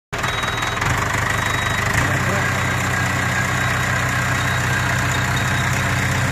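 A 2005 JCB 3CX backhoe loader's four-cylinder diesel engine running steadily at idle, with a low, even engine note.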